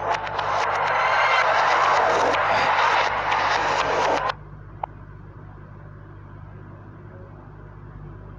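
A loud, steady rushing noise from a TV advert's soundtrack played in reverse. It cuts off suddenly about four seconds in, when playback is paused. What remains is a low steady hum and faint hiss.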